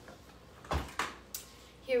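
Three sharp knocks of a metal saucepan being handled and lifted off the stovetop, close together a little under a second in.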